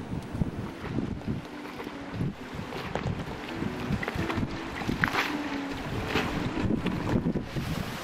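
Strong, gusty wind buffeting the microphone aboard a boat, over the wash of choppy, whitecapped sea.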